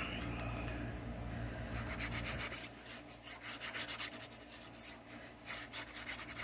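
Cardstock panels being handled and slid over a card and craft mat, with light rubbing and scattered small scrapes and ticks as liquid glue is dabbed onto a black card panel.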